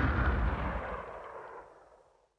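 Closing sound effect: a deep boom with a ringing wash, dying away steadily and fading out by the end.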